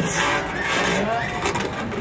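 Murmur of scattered audience voices in a small hall, a few faint words rising out of the room noise.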